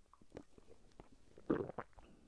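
A person drinking from a mug: small wet mouth clicks of sipping, then a louder gulp about one and a half seconds in.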